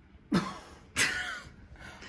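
A woman coughs twice into her hand, two short coughs about two-thirds of a second apart.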